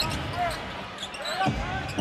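A basketball being dribbled on a hardwood court, with two low thumps about half a second apart near the end, over arena crowd noise.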